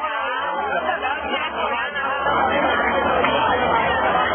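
Crowd chatter: many people talking over each other at once, getting louder about two seconds in.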